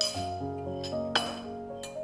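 A ceramic bowl and spoon clinking as the bowl is set down: a ringing clink at the start, another about a second in, and a light tick near the end. Soft piano music plays underneath.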